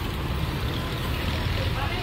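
Busy street ambience: a steady rumble of road traffic with faint voices in the background.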